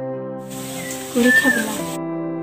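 Soft background music with long held notes. A little past a second in, over a burst of hiss, a short voiced cry rises and falls.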